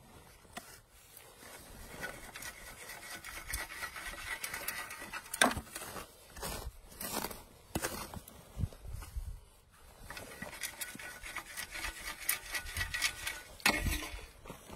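Soil being sifted through a hand-held wire-mesh dirt sifter over a bedded foothold trap: irregular scraping and rubbing as the screen is worked, broken by a few sharp taps in the middle.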